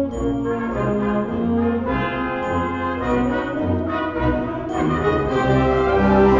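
A concert band playing a march, a brass-led passage of held chords that change every second or so.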